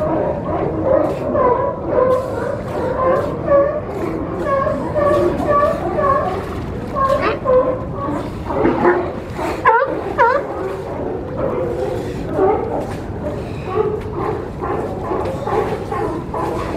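A group of California sea lions barking, many short calls overlapping and repeating, over a steady low background rush. About ten seconds in, a cluster of sharper up-and-down calls stands out.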